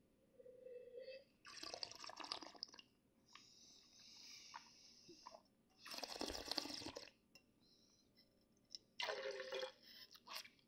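A person sipping wine and slurping it, drawing air through the wine in the mouth in a few short bursts with a longer hiss between them, then spitting it into a metal spit cup near the end.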